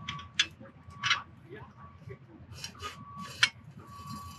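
A one-piece grass root auger's extrusion tool being pressed down, pushing a sandy soil core with grass roots out of the steel sampling tube. It makes a few short, uneven scrapes and rustles.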